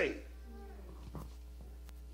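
The preacher's word "saved" ends, then a faint, drawn-out voice answers in the background and fades within about a second, over a steady low electrical hum. A small tick comes near the end.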